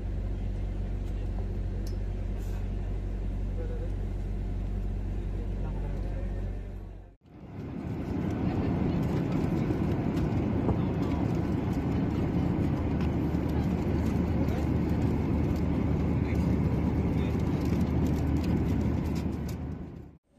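Steady low engine hum heard from inside an airport apron bus for about seven seconds. After a cut comes the louder, steady rushing drone of an airliner cabin in flight.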